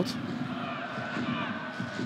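Football stadium crowd noise: a steady murmur of many voices, with faint distant shouts or chanting over the top.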